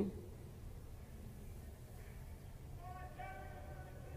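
Faint indoor ice-rink ambience: a low steady hum, with a faint distant voice calling out about three seconds in.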